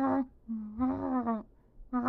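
A person's voice laughing in long, hummed, closed-mouth notes at a steady pitch: one note ends just after the start, and a longer one lasts about a second.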